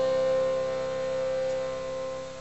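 Piano accordion holding one long sustained note, slowly fading.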